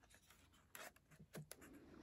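Faint rub and rustle of a book page being turned by hand, with a few soft paper ticks about a second in; otherwise near silence.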